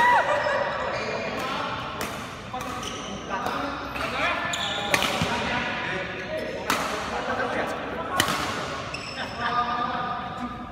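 Badminton racket strikes on a shuttlecock: a series of sharp smacks, the loudest about five, seven and eight seconds in, ringing in a large hall with voices in the background.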